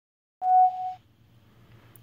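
A single electronic beep, one steady mid-pitched tone about half a second long, typical of a phone or camera starting to record.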